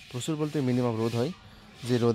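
A man talking in short phrases, with a pause of about half a second near the end.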